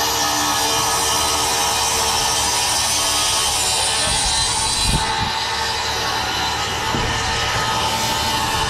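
A machine running steadily, a continuous noise with a faint constant hum, with a few low knocks about four to five seconds in.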